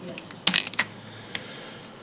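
Computer keyboard keys being pressed: a quick run of about five clicks about half a second in, then a single click a little later.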